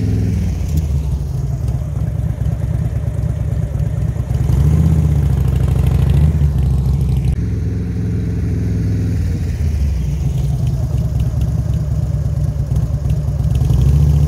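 Cruiser motorcycle engine running, getting louder about four and a half seconds in and easing back a couple of seconds later, then holding steady.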